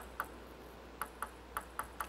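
A table tennis ball being bounced before a serve, making about six light, sharp ticks in an uneven rhythm.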